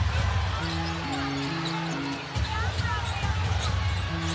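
Basketball being dribbled on a hardwood court, with sneakers squeaking, over arena crowd noise. Arena music plays a few held notes that step in pitch in the first half.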